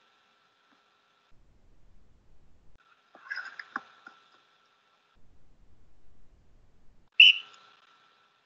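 A faint, thin, steady whistle-like tone comes and goes in three stretches, with a few soft clicks in the middle one. Near the end there is a short, loud, shrill whistle-like note.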